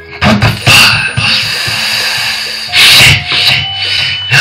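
Music playing back from a Sony ACID Music Studio project over the computer's speakers: an instrumental beat with several loud hits that reach across the whole range.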